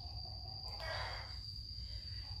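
A woman's soft breath, a short exhale about a second in, during a pause in her talking, over a steady high-pitched insect tone and a low hum.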